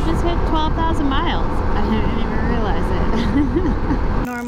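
Harley-Davidson Pan America motorcycle at highway speed: steady wind and engine noise from on board, with a person's voice rising and falling in pitch over it.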